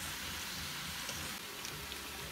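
Steady sizzle of sausage, onions, bell peppers and frozen peas and carrots cooking in a stainless steel pot on the stove, the vegetables softening over the heat.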